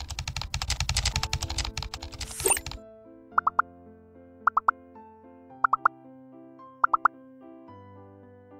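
Rapid typewriter-style keystroke sound effect clicking for the first two and a half seconds while the question text types out, ending with a short rising whoosh. Then a soft quiz background-music loop with quick triplets of bright plucked 'plop' notes repeating about once a second.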